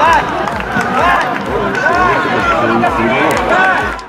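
Several men's voices shouting and cheering over one another as the players celebrate a goal, with a low regular thump about twice a second underneath.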